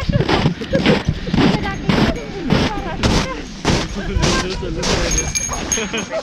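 Footsteps crunching in deep snow at a walking pace, about two steps a second, under indistinct talk from other hikers.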